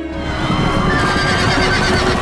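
Film trailer soundtrack: music under a dense rushing rumble of action sound effects, with a wavering high cry entering about half a second in.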